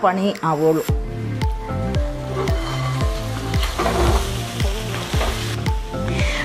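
Chicken chukka sizzling in a metal pot as it is stirred with a spatula, under background music with a steady bass beat. A singing voice in the music is heard for the first second and again near the end.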